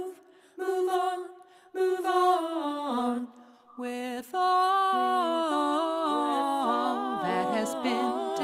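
A woman singing a cappella, a slow song in short phrases with brief pauses, then from about four seconds in a longer unbroken sustained passage.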